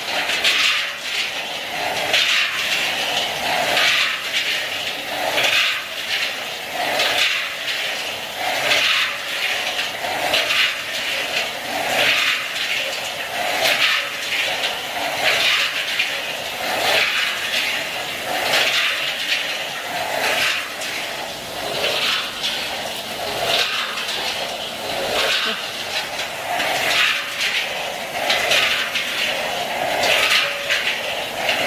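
Peanuts tumbling and sliding around the inside of a rotating stainless-steel spiral-type mixing drum as they are coated with ladled liquid flavoring: a steady rushing noise that surges a little faster than once a second.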